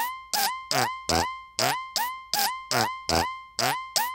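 Synthesized fart sound from a Mojito synth preset, run through the Rhino Kick Machine plugin, repeating about two and a half times a second. Each hit starts with a papery click and carries a pitched tone that bends up and then holds, giving a wet kind of fart.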